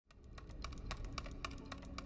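Quiet, rapid, irregular clicking, several sharp clicks a second like typing, over a steady low rumble, starting about a quarter-second in.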